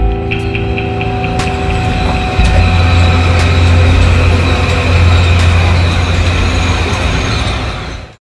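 Metro-North commuter train rolling past a station platform close by, a loud steady rumble of wheels and motors that deepens and grows louder about two and a half seconds in, with a quick run of light clicks near the start.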